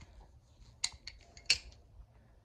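Two sharp clicks, about two-thirds of a second apart, with fainter ticks between: hand tools such as pliers being picked up and handled.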